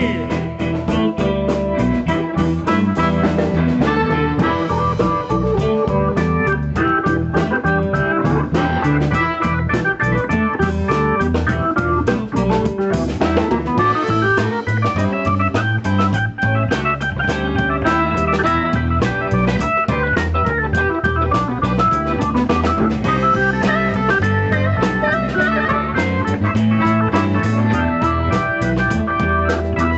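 Live blues band playing an instrumental break: an organ-sounding keyboard solo over electric guitar and drum kit, at a steady beat.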